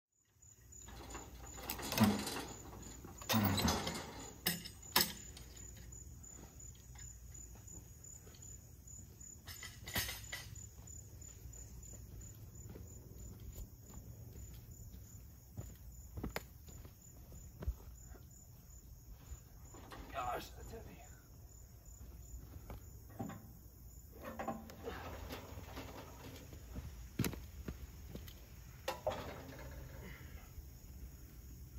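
Insects chirring steadily at a high pitch, with scattered knocks and rustles from someone moving around and handling things.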